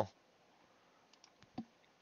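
A few faint computer mouse clicks, the loudest about one and a half seconds in.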